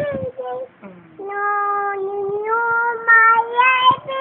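A young boy singing long, held wordless notes in a clear high voice, with a short break about a second in and the pitch stepping up over the last second or so.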